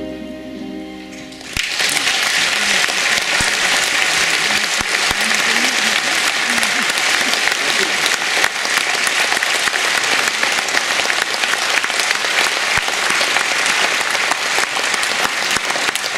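A concert audience's applause breaks out suddenly about a second and a half in and goes on steadily, after the accompaniment's final held chord dies away at the close of the song.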